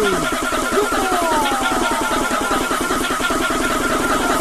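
Bounce (donk) dance music from a club DJ mix: a fast, buzzing, evenly repeated pulse with falling pitch sweeps gliding over it.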